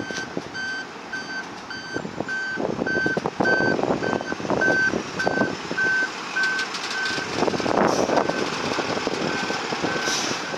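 Fire engine's reversing alarm beeping about twice a second as the engine backs up, over the rumble of its engine; the beeps thin out near the end.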